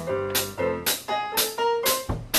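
Live small-band blues: an electric keyboard playing piano-sound chords and a melody line, with sharp drum or cymbal strikes keeping a steady beat.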